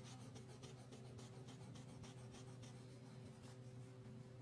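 Crayon scratching on paper in quick back-and-forth strokes, about four or five a second, as a dress is coloured in; faint, with a low steady hum underneath.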